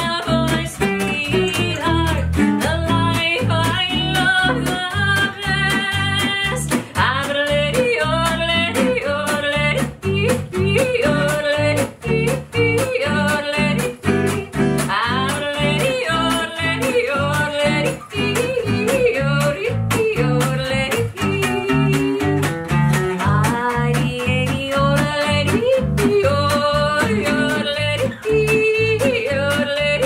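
A woman yodeling a country song, her voice flipping rapidly up and down in pitch, backed by a strummed acoustic guitar and an electric bass keeping a steady beat.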